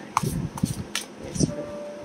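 Tarot cards being shuffled by hand, giving a few short, sharp card snaps over the first second and a half.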